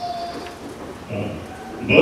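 A man's voice through a handheld microphone and PA, talking with short pauses and getting louder near the end. A brief thin steady tone sounds at the start.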